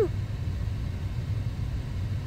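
Car heater blowing at full blast inside the car cabin: a steady low rumble and faint rushing air.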